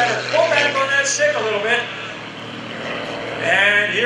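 An MX-2 aerobatic plane's 350-horsepower engine and MT propeller droning steadily in flight. A voice talks over it for the first couple of seconds and again near the end.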